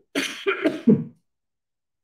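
A man coughing, three coughs in quick succession over about a second.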